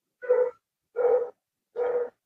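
A dog barking three times, evenly spaced about three-quarters of a second apart, quieter than the nearby speech.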